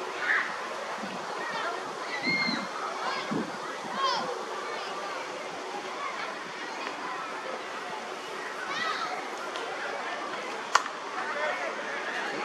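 Indistinct voices of players calling across a cricket field over a steady outdoor background. Near the end comes a single sharp crack of a cricket bat hitting the ball.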